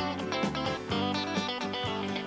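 A live rock band playing an instrumental passage: electric guitar over a steady drum beat.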